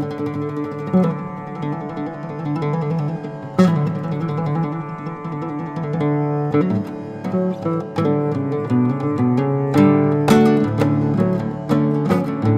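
Solo nylon-string acoustic guitar played fingerstyle, a flowing line of plucked notes over ringing bass. A sharp strummed chord comes about three and a half seconds in, and quick strums cluster near the end.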